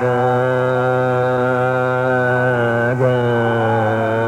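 Hindustani classical vocal in Raag Megh: a male voice holds a long sustained note over a steady drone, breaks briefly about three seconds in, and moves on to a new held note. The recording is old and dull, with no high end.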